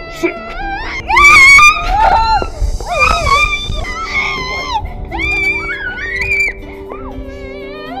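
A young girl wailing and crying out in distress, loudest about a second in, over background film music with sustained low notes.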